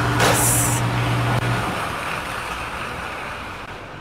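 Air-blown lottery ball machines running: a rush of air with a steady low hum and a short high hiss about half a second in. The hum stops about a second and a half in, and the air noise fades away.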